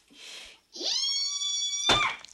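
A high, drawn-out cry that rises at its start and then holds on one pitch for about a second, cut off by a sharp thump near the end.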